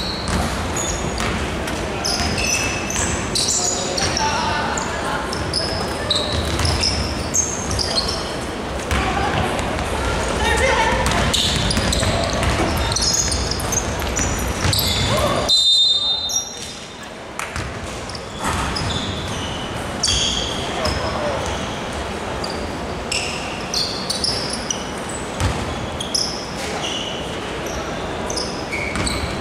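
Basketball game on a wooden gym floor: the ball being dribbled, sneakers squeaking and players calling out, echoing in a large hall. A referee's whistle sounds about halfway through, followed by a brief lull before play sounds pick up again.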